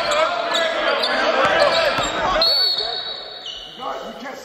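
Basketball drill on a hardwood gym floor: sneakers squeaking, a ball bouncing and players calling out over one another, in a large echoing gym. After about two and a half seconds it quietens and a steady high tone is heard, dropping a step in pitch.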